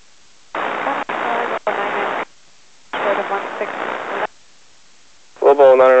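Two transmissions on an air traffic control tower radio frequency, each over a second long, heard as a voice buried in static and hard to make out; the first cuts out briefly twice. Clear radio speech begins near the end.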